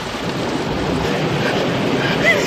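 Loud steady rumble and hiss of a moving car, heard from inside the cabin.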